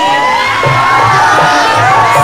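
Crowd cheering and shouting over loud live Bhojpuri stage music, many voices at once without a break.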